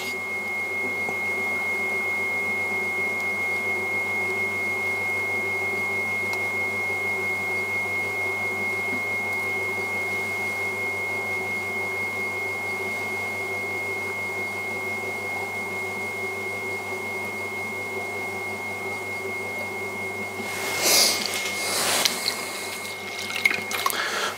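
Electric pottery wheel running, with a steady motor hum and a thin high whine, and the wet sound of slip-covered clay rubbing under the hands as the cylinder wall is pulled up. Near the end come two brief wet splashes as a hand goes to the water bowl.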